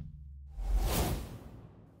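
A whoosh transition sound effect: a rush of noise with a low rumble under it swells about half a second in, peaks around a second, and fades away. The last of the intro music dies out just before it.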